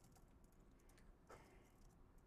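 Faint computer keyboard typing: scattered, irregular key clicks, with one brief soft sound just past halfway.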